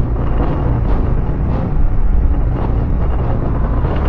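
Steady wind rush and road rumble on the microphone of a camera riding on a moving bicycle, heaviest in the low end.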